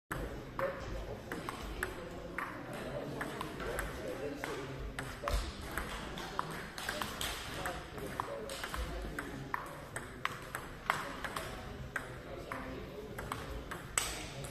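Table tennis balls clicking sharply off bats and tables in quick, irregular strikes during rallies, over a murmur of voices in the hall.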